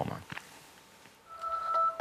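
A short lull, then about a second in a chord of steady electronic tones starts and holds: a newscast's transition sting as the programme goes back to the studio.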